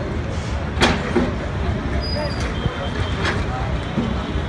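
Street noise at a demolition site: a steady low engine rumble with the voices of a crowd. There is a sharp knock just under a second in, and a brief high thin tone about two seconds in.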